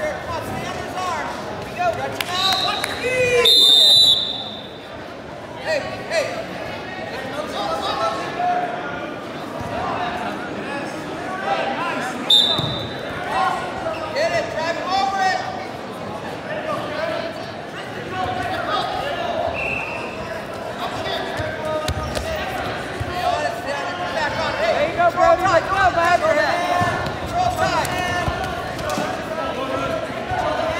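Spectators and coaches talking and calling out over each other at a wrestling match. A short, shrill referee's whistle sounds about three and a half seconds in, the loudest moment, and again around twelve seconds.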